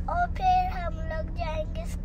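A young girl singing in a high voice, holding some notes steady, over the steady low hum of a car cabin.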